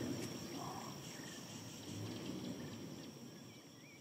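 Steady high insect drone, with a few brief bird calls and a low, noisy outdoor background, all fading out toward the end.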